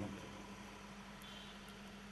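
Faint steady electrical hum with hiss from a public-address system during a pause in a man's speech; his voice dies away just at the start.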